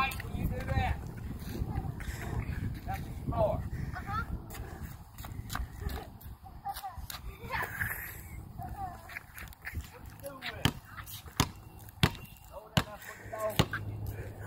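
A basketball bouncing on hard ground, several sharp bounces about three-quarters of a second apart in the last few seconds, with children's voices in the background.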